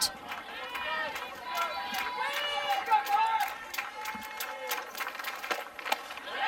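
Ballpark crowd and players' chatter at a softball game: many high voices calling and chattering over each other, with scattered sharp claps, and a single sharp pop near the end as the pitch is caught.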